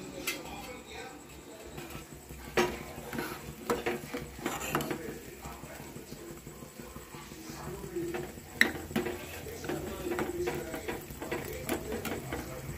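Steel ladle stirring milk for kheer in a steel pot, with a few sharp clinks of metal on metal: one about two and a half seconds in, more around four seconds, and one near nine seconds. A low steady hum runs underneath.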